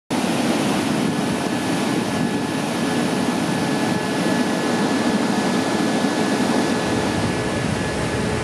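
Steady roar of a glacial outburst flood: a torrent of muddy meltwater rushing down a boulder-strewn channel.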